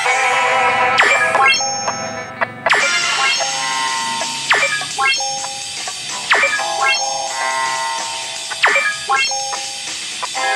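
Background music with a light, bell-like melody, cut through about every two seconds by a short falling swish.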